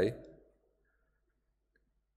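A man's reading voice finishes a word right at the start, fading out in a short room echo within half a second, then near silence.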